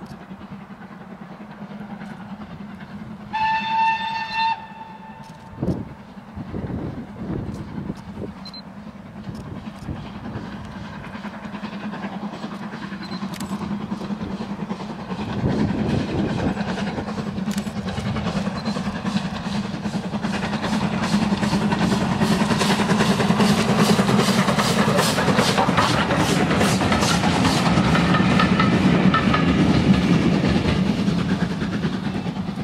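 A distant steam locomotive gives one whistle of about a second, a single steady note, a few seconds in. Its exhaust beats then grow steadily louder as it approaches, settling into an even rhythm of about two to three beats a second near the end.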